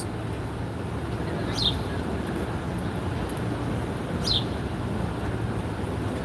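Steady low rumble of city street traffic, with a bird giving two short, falling chirps, one about a second and a half in and another about four seconds in.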